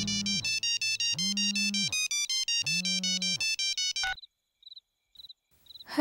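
Mobile phone ringtone: a quick electronic melody of rapidly repeating high beeps with two lower held notes. It cuts off suddenly about four seconds in as the call is answered.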